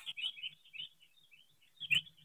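A small bird chirping: a quick, unbroken run of short high chirps, several a second, faint in the background. A brief knock of handling noise just before the end.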